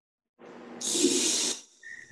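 A person's breath into a close microphone: one hissing breath about half a second in, lasting about a second.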